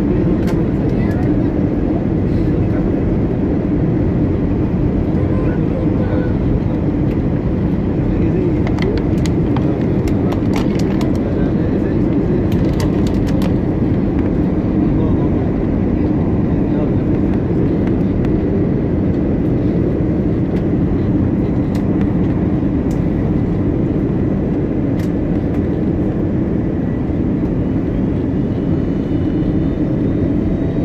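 Steady drone of a passenger aircraft's cabin in flight, engine and airflow noise heard from a seat by the window, even and unbroken, with a few faint clicks in the middle.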